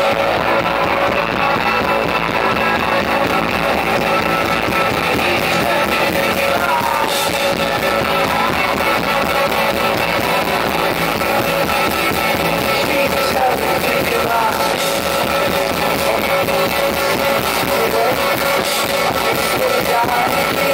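A rock band playing live, loud and steady, with electric guitars to the fore.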